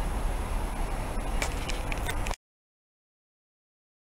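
Steady outdoor background noise on an empty railway platform, mostly a low rumble, with a couple of faint clicks. It cuts off to dead silence a little over two seconds in.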